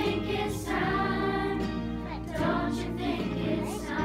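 Children's choir singing in unison over a held instrumental accompaniment.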